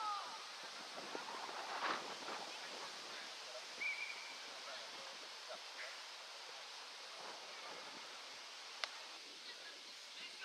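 Distant shouts and calls of players across an outdoor football pitch over a steady hiss of wind and open-air background, with a single sharp knock near the end.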